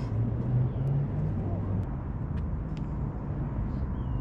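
Steady low rumble of outdoor background noise, with a few faint, short clicks.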